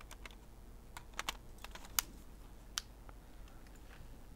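Irregular clicks from Meike automatic extension tubes and a kit lens being twisted onto a Sony E-mount camera's bayonet mount, with the loudest click about two seconds in.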